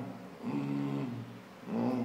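A man's wordless hummed vocalizations: two held "mmm" sounds of fairly steady pitch, each about half a second long, the second starting about a second and a half in.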